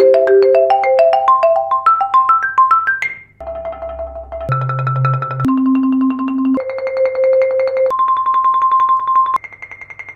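Marimba played with Dragonfly Percussion M5 hard mallets. It opens with a quick rising run of single strokes for about three seconds, then moves to two-mallet rolls held on one note at a time, each a little over a second, stepping up in pitch from low to high. The last, highest roll is quieter. A faint steady low hum sits underneath throughout.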